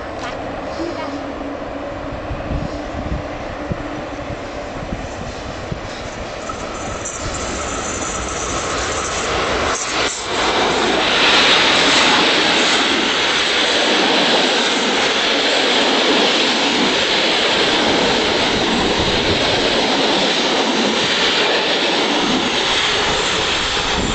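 PKP EU07 electric locomotive hauling an Intercity passenger train past at speed. The noise builds over the first ten seconds as the train approaches, then from about ten seconds in the carriages rush past close by with a loud, steady roar of wheels on rail and displaced air.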